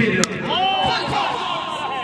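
A single sharp crack of a cricket bat striking a tape-wrapped tennis ball, a big hit for six, about a quarter second in. It is followed by men's voices shouting.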